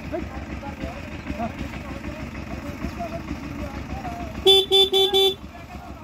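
A vehicle horn beeps four times in quick succession a little over four seconds in, loud and clear over a steady low rumble and distant voices.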